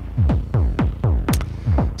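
Eurorack modular synthesizer patch playing a quick run of short percussive electronic notes, each falling steeply in pitch, about four or five a second.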